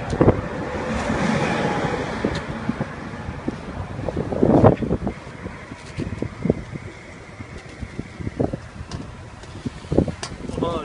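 Hand-twisted stainless-steel pineapple corer working down through a pineapple, with scattered short knocks and handling noise over a steady background rush.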